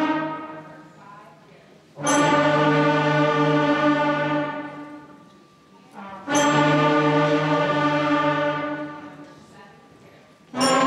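Beginning sixth-grade concert band playing long held notes together. The first note fades out, then a new note starts together about two seconds in and another about six seconds in, each sustained and then dying away gradually.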